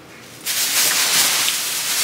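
A plastic shopping bag rustling in a steady hiss-like crinkle as items are pulled out of it, starting about half a second in.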